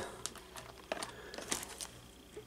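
Foil wrapper of a 1992 Fleer Ultra baseball card pack crinkling in the hand, a few faint scattered crackles.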